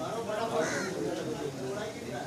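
Indistinct voices of people talking in the background, with one short harsh call about half a second in.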